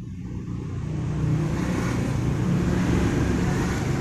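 A motor vehicle's engine running, with road-like noise, swelling over the first second and then holding steady.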